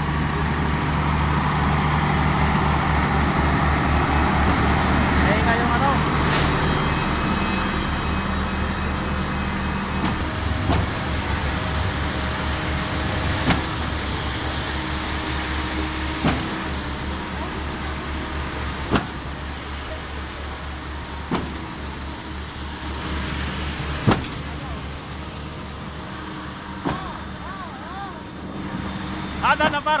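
Diesel engines of a concrete pump and mixer truck running steadily with a low throb, while concrete is fed from the mixer chute into the pump hopper. From about the middle on, a sharp knock comes every two to three seconds, typical of the pump changing stroke as it pumps.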